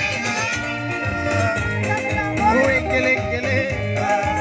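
Live gospel praise music: electronic keyboard playing under a singing voice, amplified through a PA speaker.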